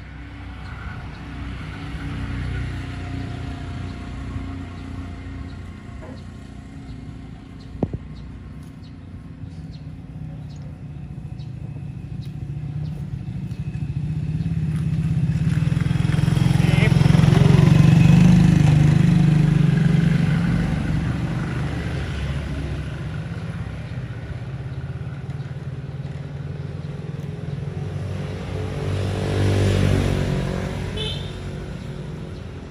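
Motor vehicle engine running close by, growing louder to a peak about halfway through as it passes and then fading, with another vehicle approaching near the end.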